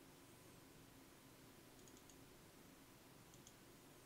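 Near silence: quiet room tone with a few faint computer mouse clicks, in pairs a little under two seconds in and again past three seconds in.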